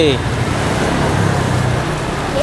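Bánh xèo crepe batter sizzling in a hot pan over a gas burner: a steady hiss with a low rumble underneath.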